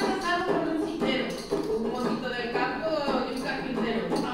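A woman speaking in Spanish into a stage microphone, in a spoken recitation.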